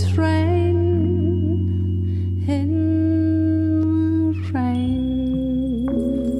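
A live band playing a slow ballad: long held melody notes over a steady bass and keyboard chord, the last note wavering with vibrato.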